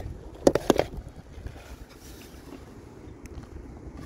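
Three or four sharp knocks close together about half a second in, then a low, steady rumble of wind on the microphone.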